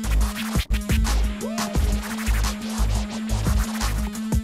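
Vinyl scratching on Technics SL-1200 turntables over a hip-hop beat with a heavy kick drum and a steady held bass note. Quick scratch strokes sweep up and down in pitch in the first two seconds.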